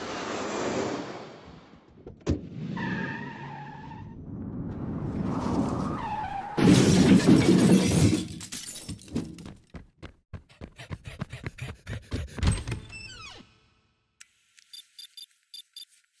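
A string of edited comedy sound effects: a rushing whoosh that swells into a loud noisy burst about six and a half seconds in, followed by a run of rapid clattering knocks and clicks that thin out and stop with a few seconds to go.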